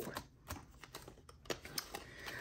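Light, scattered clicks and taps of long fingernails on clear plastic envelope pockets as a page of a ring-binder cash wallet is turned, about half a dozen separate clicks.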